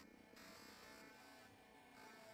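Near silence: a faint steady background hum and hiss.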